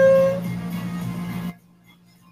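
A short burst of music: one held note that slides up slightly and fades, over a low steady drone that cuts off abruptly about one and a half seconds in.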